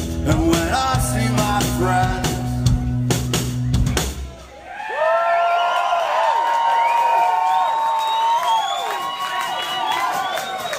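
Rock band with electric guitar and drum kit playing the final bars of a song, ending with a last hit about four seconds in. The crowd then cheers and whoops.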